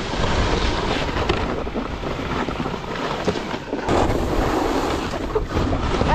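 Wind buffeting an action camera's microphone while following a snowboarder downhill at speed, mixed with the steady hiss and scrape of snowboards sliding over packed snow.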